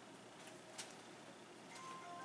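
Faint rustle and light ticks of a needle and thread being pulled through non-woven landscape fabric during hand-sewing, with one sharper tick a little under a second in. Soft background music comes in near the end.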